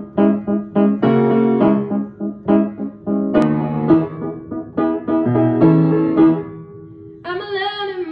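Upright acoustic piano playing the opening chords of a pop ballad, struck repeatedly. A woman's singing voice comes in near the end.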